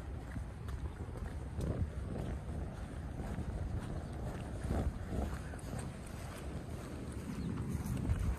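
Wind buffeting the microphone: a low rumble that swells louder a few times, about two seconds in and about five seconds in.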